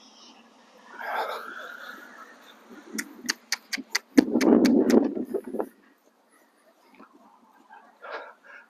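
A quick run of about nine sharp tongue clicks, a few a second, driving the horse forward. They overlap a noisy rush lasting about a second and a half.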